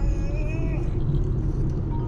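Steady low road and engine rumble inside a moving car's cabin, with a voice from the car's audio system in the first second.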